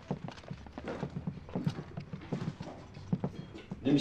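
Footsteps of several people walking in on a hard floor: a run of short, uneven knocks of boots and shoes, several a second.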